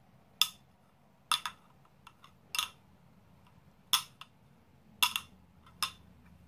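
Two Bakelite bangles knocked against each other by hand: about six hard clunks, roughly a second apart and unevenly spaced, with a few lighter taps between. The dull clunk is apparently indicative of genuine Bakelite.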